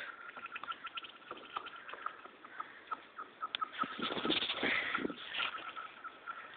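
A rock skittering across thin lake ice, the ice giving off a long run of quick high chirps and clicks. The sound is busiest and loudest about four to five seconds in.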